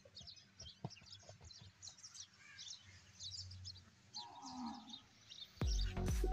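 Faint outdoor ambience of many small birds chirping, with a farm animal calling once about four and a half seconds in. Music with a heavy beat starts just before the end.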